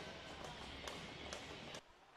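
Faint ice-hockey rink ambience with light background music and a few sharp clicks on the ice. The sound cuts off abruptly near the end.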